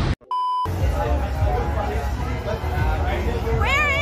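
A short electronic beep about a third of a second in, then busy street noise with crowd chatter. Near the end a woman laughs in a high-pitched voice.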